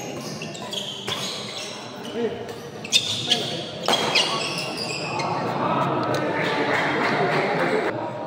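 Badminton rally: rackets hit the shuttlecock several times in quick succession, and shoes squeak on the court. From about four seconds in, the crowd in the hall shouts and cheers louder as the exchange goes on.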